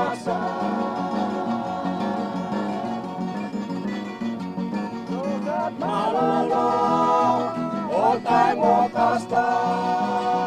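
Papua New Guinea stringband music: steadily strummed acoustic guitars over a repeating bass line, with group singing coming in about six seconds in.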